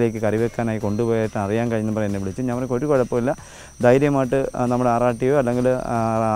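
A man talking, with a short pause about three and a half seconds in, over a steady high-pitched insect drone.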